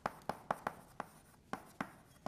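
Chalk writing on a blackboard: an irregular run of sharp taps and short scratches, about seven in two seconds.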